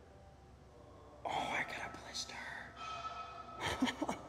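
A person's voice whispering softly, starting about a second in after a moment of quiet, with a short louder burst near the end.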